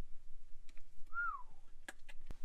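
A single short whistle-like note about a second in, rising slightly and then falling in pitch, with a few faint clicks around it.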